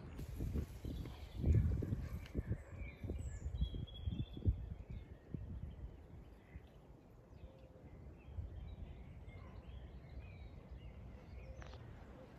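Wind buffeting the microphone in uneven low gusts that die down about halfway through. Faint birdsong chirps through it.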